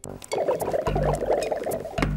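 A fast, chattering, twinkling comic sound effect over light music, with a deep bass note about a second in.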